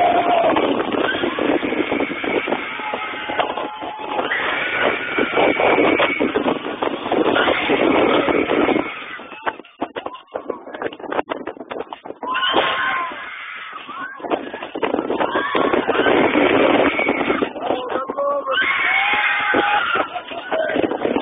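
Steel roller coaster ride heard from a rider's phone: wind rushing over the microphone and the train running along the track, with riders yelling and screaming. It drops quieter for a few seconds about halfway through, then builds again.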